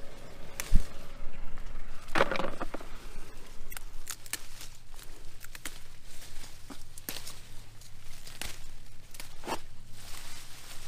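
Hot cherry pepper plants rustling as peppers are snapped off their stems by hand: scattered sharp snaps and leaf rustles, with a longer rustle about two seconds in. A dull thump comes just under a second in.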